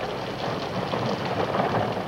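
Horse-drawn stagecoach running, a steady, dense rumble of hooves and wheels.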